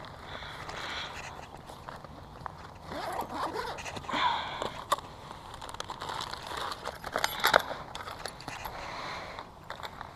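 Backpack zipper being pulled and the bag's contents rummaged through: rustling fabric and scraping, with a few sharp clicks, the loudest past the middle.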